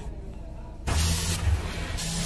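Car wash spray jets starting suddenly about a second in, water hissing hard against the car with a low rumble underneath, heard from inside the cabin.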